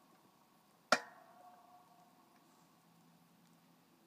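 A single sharp metallic clink about a second in, ringing briefly as it fades, from the pump handle and linkage of a manual hydraulic log splitter being worked. Otherwise only faint background.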